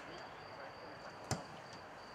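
A football kicked once at a distance, a single sharp thud about a second and a quarter in, over a faint steady high-pitched tone.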